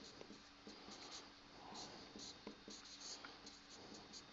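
Faint scratching of a marker pen writing on a whiteboard, in many short strokes with small ticks as the tip touches down.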